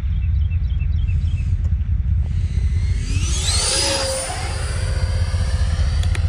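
80mm electric ducted fan of a Freewing JAS-39 Gripen RC jet whining as it passes, its pitch sweeping up and then falling away between about two and five seconds in, over a steady low rumble.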